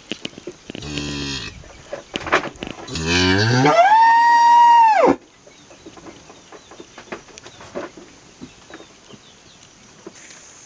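A calf mooing twice: a short low call about a second in, then a longer call that rises in pitch and holds a high note before cutting off suddenly about five seconds in.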